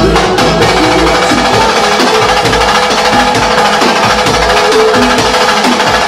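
Pagodão baiano band playing live: loud, dense percussion-driven music over a pulsing bass beat.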